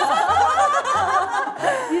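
Several people laughing together, their voices overlapping.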